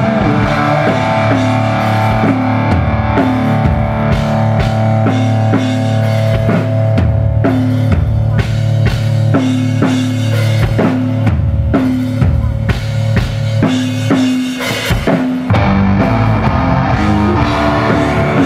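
Live rock band playing an instrumental passage with no singing: a drum kit beating out kick and snare under electric guitar and bass guitar.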